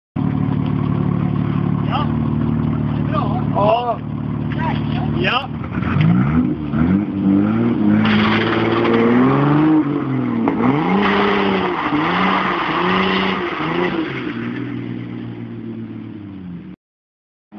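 Turbo-converted Opel Omega 2.6 engine holding a steady idle, then revved hard several times, its pitch climbing and dropping with each rev and a rushing noise over two of them. The sound fades near the end as the car pulls away.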